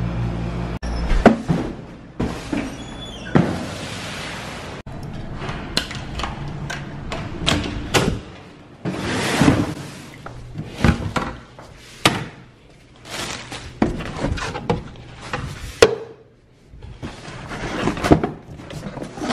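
Handling clatter: a run of irregular knocks, thuds and rustles from carrying and opening a cardboard box, among them a door. A low steady hum fills the first second.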